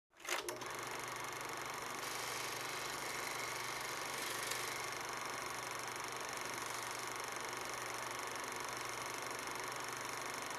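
A couple of clicks, then a steady mechanical whirring over hiss and a low hum.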